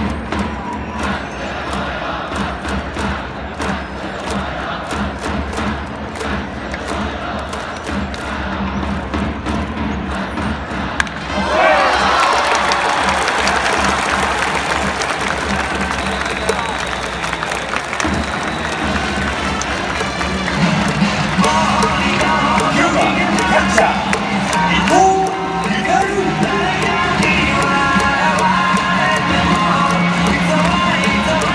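Baseball stadium crowd cheering in time with regular sharp beats, which swells suddenly into a louder burst of cheering about eleven seconds in as the play develops. In the second half, a cheering-section melody plays over the crowd in held, stepping notes.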